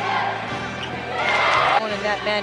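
Basketball game broadcast audio under music: arena and court noise from play, swelling to a louder burst about a second in and cutting off abruptly just before the end.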